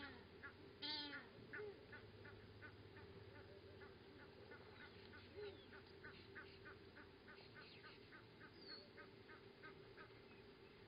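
Faint wild bird calls: two louder calls falling in pitch at the start and about a second in, then a long series of short repeated notes, about three a second, that dies away near the end, over a faint steady hum.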